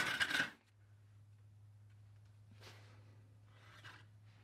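A mouse moving inside a 3D-printed plastic exercise-wheel mouse trap: faint scratching and rustling about two-thirds of the way in and again near the end, over a steady low hum. A brief scrape comes in the first half second.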